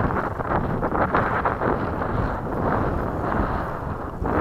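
Wind buffeting the microphone: a steady, rough noise strongest in the low range, with no motor whine.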